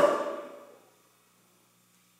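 The end of a man's shouted "Go on!", falling in pitch and dying away over the first second, then near silence with a faint low hum.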